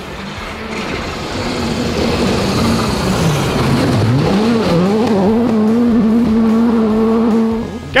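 Rally car engine at full throttle on a gravel stage. Its pitch climbs, dips sharply and climbs again about three to four seconds in, then holds a steady high note and falls away just before the end.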